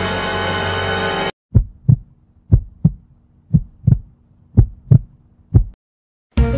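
The held last chord of a dramatic 'dun dun dun' music sting, which cuts off just over a second in. It is followed by a heartbeat sound effect: five double thumps, about one a second, over a faint low hum.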